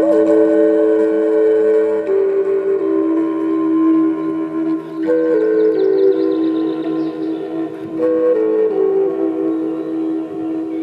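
Native American-style wooden flute playing a slow melody of long held notes, each phrase stepping downward, over a steady low drone note. New phrases begin at the start, about halfway through and near the end.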